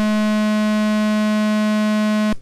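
Square-wave output of an ARP 2600-clone synthesizer's oscillator, pulse width set to a square. It is a single loud, perfectly steady tone that starts abruptly and holds one pitch of about 213 Hz.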